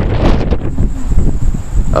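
Wind buffeting the microphone: a loud, uneven rumble that rises and falls in gusts.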